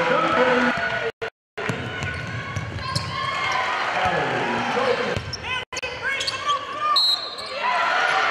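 Live basketball game sound: a ball dribbled on a hardwood court, sneakers squeaking and players' and spectators' voices. The sound drops out briefly twice, about a second in and again near six seconds.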